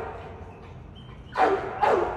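American Staffordshire terrier barking twice in quick succession, the barks about half a second apart in the second half.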